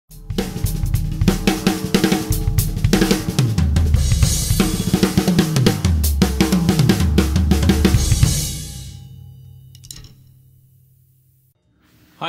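Drum kit played fast with sticks: busy snare and bass drum, cymbal crashes, and tom fills that run down in pitch. The playing stops about eight seconds in, and the kit rings out and fades away.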